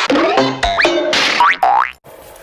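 Channel logo sting: short bright music with sound effects that slide up in pitch, ending in a rising glide that cuts off suddenly.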